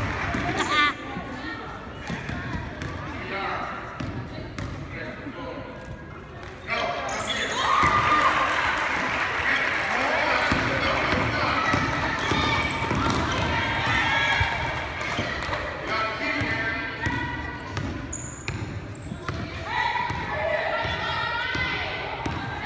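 A basketball bouncing on a gym floor as it is dribbled, with spectators talking and calling out around it. The crowd noise grows louder about seven seconds in.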